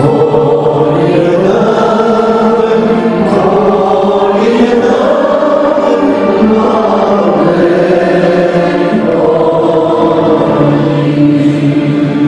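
Two men singing a Romanian Christmas carol (colind) together in harmony, in long held notes that step between pitches.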